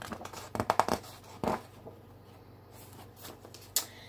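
Paper rustling as a page of a picture book is turned, in a few quick bursts during the first second and a half, with a brief rustle near the end.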